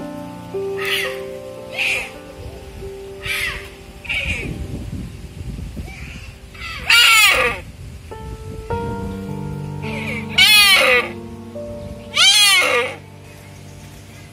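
Red deer calling over background music: a few short, high bleats in the first few seconds, then three loud bleats in the second half, each rising and falling in pitch.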